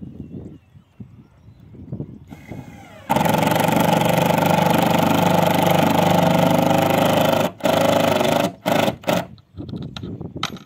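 Cordless drill running under load at a fixing point on a corrugated fibre-cement roof tile: a steady motor whine for about four seconds, a brief stop, then another short run and a few quick bursts near the end.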